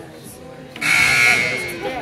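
Gym scoreboard buzzer sounding once for about a second, starting abruptly just under a second in, over spectators' chatter.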